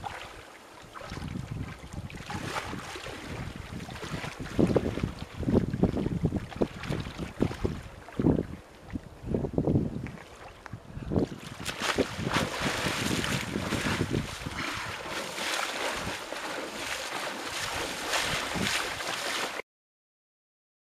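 Wind buffeting the microphone over water sloshing and splashing as a man wades through icy shallow water. The first half is gustier, with loud low rumbles. From about halfway the splashing is denser and more continuous. The sound cuts off abruptly just before the end.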